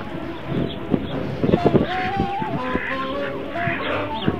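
Domestic ducks quacking in short nasal calls, more often in the second half, over a thin held tone that steps between pitches.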